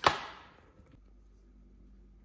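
A single sharp snap or hit, loud and brief, dying away within about half a second; after that only a faint steady hum.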